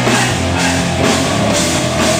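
Rock band playing live: electric guitars over a drum kit, with a steady beat of about two hits a second.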